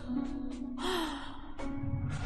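A person gasping and sighing in a few short breaths, over soft background music with a held low note.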